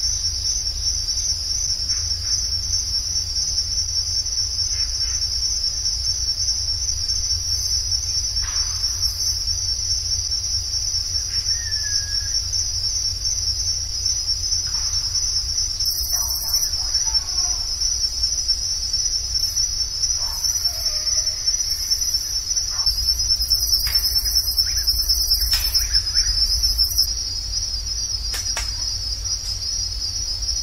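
A night-time insect chorus: a steady, high-pitched trill that never lets up, over a steady low rumble. A few faint, short calls and clicks come through underneath.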